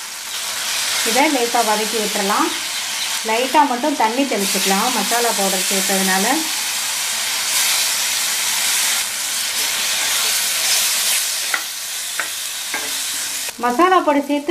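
Shallots, tomatoes and sambar powder frying in oil in a stainless steel kadhai, sizzling while a wooden spatula stirs them. About halfway through, water is poured into the hot pan and the sizzle turns louder and hissier for a few seconds.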